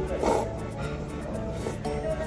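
Ramen noodles slurped from the bowl over background music: one loud slurp about a quarter-second in, and a shorter, fainter one near the end.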